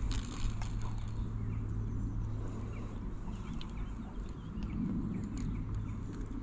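A person quietly chewing a small, coarse wild radish leaf: faint irregular crunching and clicks.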